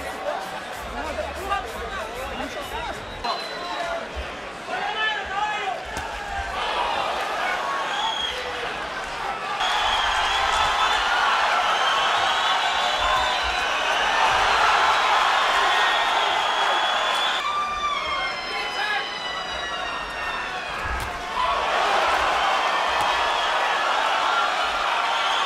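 Boxing arena crowd noise with voices over it, changing abruptly several times where short fight clips are cut together; the crowd is loudest from about ten to seventeen seconds in.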